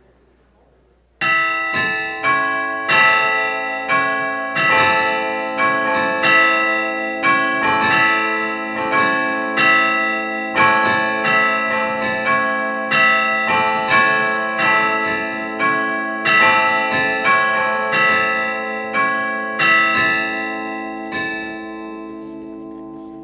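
Church bells ringing a peal that starts suddenly about a second in: many pitches struck one after another in a steady run, each stroke ringing on under the next. The peal begins to fade near the end.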